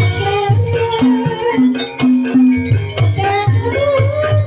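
Javanese gamelan music for an ebeg hobby-horse dance. Kendang hand drums beat a steady rhythm under repeated held metallophone notes, with a wavering melody line above.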